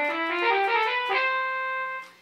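Synthesized trumpet voice of a Roland SC-55 Sound Canvas, played from a DIY electronic valve instrument (a breath-controlled MIDI controller with trumpet fingering): a smoothly slurred legato phrase of several connected notes, ending on a held note that stops at the end.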